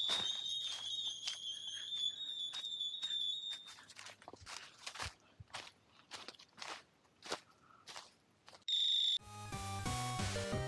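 Footsteps crunching through dry leaf litter, about two steps a second, with a high, wavering steady tone over the first few seconds. Near the end comes a short, loud, high beep, and music starts right after it.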